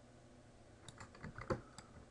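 Computer keyboard keys pressed: a quiet first second, then a quick run of about six light key clicks in the second half, one a little louder than the rest.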